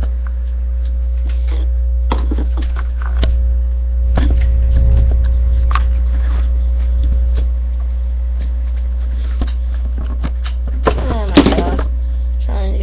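Steady low hum under scattered light clicks and knocks of handling, with a brief burst of voice near the end.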